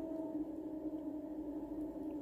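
Steady, sustained drone tone of 417 Hz therapy meditation music, unchanging in pitch.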